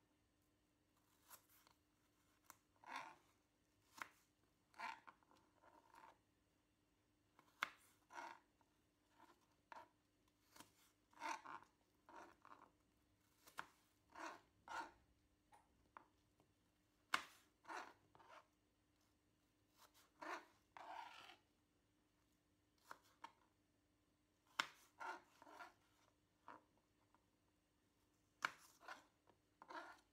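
Kitchen knife cutting apple pieces on a plastic chopping board as the cores are cut out: soft, irregular knocks of the blade through the fruit onto the board, about one a second, sometimes two or three in quick succession.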